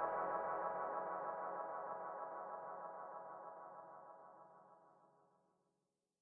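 The close of a psytrance track: a sustained synthesizer chord rings on and fades steadily away, dying out to silence about five seconds in.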